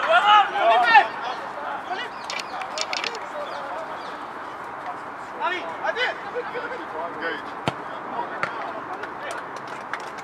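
Football pitch sound: players shouting in the first second, then a steady hiss with a laugh and a call of "go" about six seconds in. Near the end come a couple of sharp thuds, a football being kicked.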